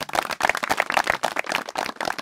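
A group of people clapping their hands, with many quick overlapping claps.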